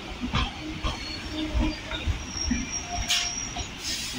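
Passenger coaches rolling slowly past, wheels thudding unevenly over rail joints and points, with brief high wheel squeals and a sharp clank about three seconds in.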